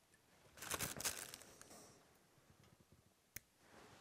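A burst of rustling, crackling handling noise starting about half a second in and lasting over a second, then a single sharp click near the end.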